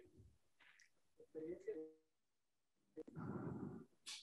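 Faint, brief bits of a man's voice in a room, with a sharp click about three seconds in followed by a short muffled rustle or murmur.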